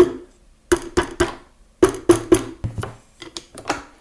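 Soft-faced mallet lightly tapping a steel barrel band on a Marlin 336W lever-action rifle, each tap with a short metallic ring. The taps come in quick groups of two or three, with fainter ones near the end, working the tight band evenly back into its seat on the barrel and magazine tube.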